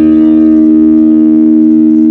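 LTD AX-50 electric guitar through a Boss Blues Driver BD-2 overdrive pedal into a Quake GA-30R amp, with the pedal's gain and tone both turned fully up. A single distorted chord is held ringing steadily and loud.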